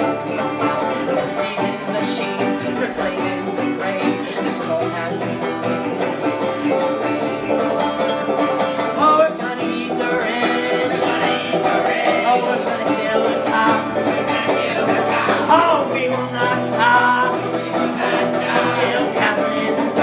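Banjo and resonator guitar playing together in a folk-punk song, with a voice singing over them in the second half.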